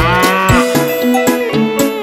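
A cartoon cow's moo, one bending, falling call of under a second at the start, over upbeat children's song music.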